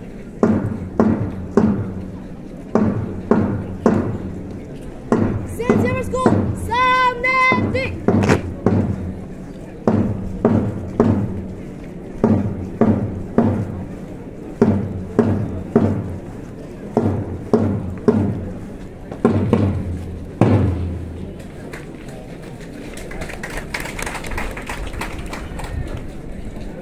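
A marching drum beating time at about two beats a second for a march past, stopping about twenty seconds in. A short high-pitched call rings out over the beat about six seconds in, and a faint steady background noise is left after the drum stops.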